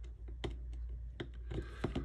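A few scattered small clicks and taps as the weight and chassis parts of a model locomotive are handled and fitted together, over a faint low steady hum.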